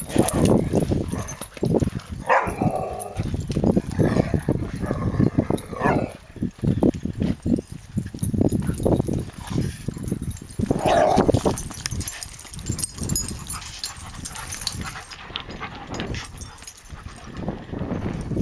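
Dogs barking and vocalising while they play-wrestle, in uneven bursts, loudest about two seconds in and again about eleven seconds in.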